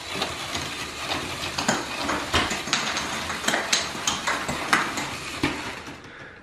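A motorized Lego Technic machine catapult running under its electric motor: a steady mechanical clatter of gears and plastic parts, with repeated sharp knocks from the mechanism cycling.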